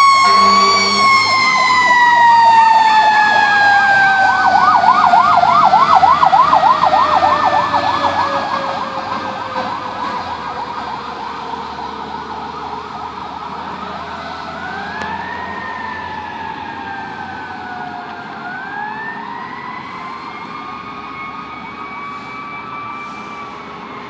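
Fire rescue truck's siren on a call: a long falling wail, with a fast yelp of about five cycles a second over it from about four to eight seconds in. Near the middle the wail rises sharply twice and slowly falls each time, and the whole siren fades as the truck drives away.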